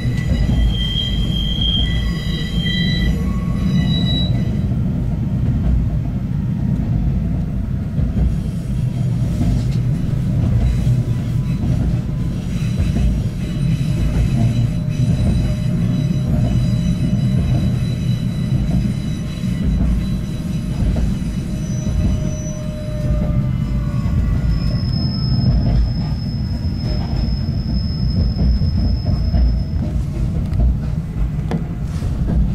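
Narrow-gauge electric railcar running, heard from inside the car: a steady low rumble from the wheels and running gear. High-pitched wheel squeal sounds in the first few seconds and again as one long steady squeal near the end.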